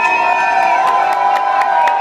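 Club audience cheering at the end of a song, with long high-pitched held calls over the crowd noise and a few scattered claps.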